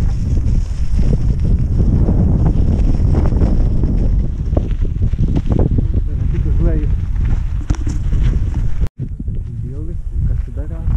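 Wind buffeting a helmet-mounted camera's microphone while riding fast along a gravel track, a heavy, steady low rumble. It breaks off for an instant about nine seconds in.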